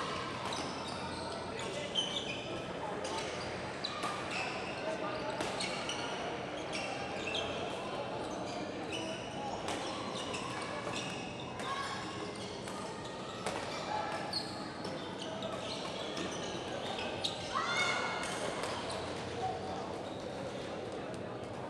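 Badminton being played in a large sports hall: sharp racket hits on the shuttlecock and short squeaks of shoes on the court floor, scattered through the whole time over a steady murmur of voices in the hall.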